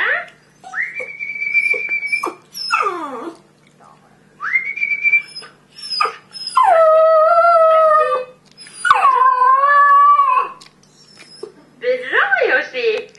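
Border terrier howling in a run of long, drawn-out calls. First come thin, high-pitched whining calls, then two louder, lower howls of about a second and a half each.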